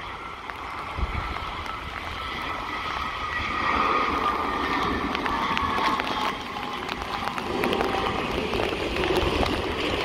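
Airbus A320 jet engines whining as the airliner lands and rolls out on a wet runway, the whine drifting down in pitch under a rising rush of noise.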